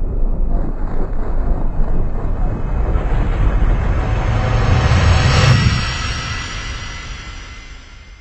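A passing vehicle: a loud rumbling noise that swells to a peak about five seconds in and then fades away.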